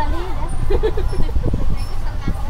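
Tour bus engine and road noise as a steady low rumble, heard while riding on the moving bus, with people's voices talking over it.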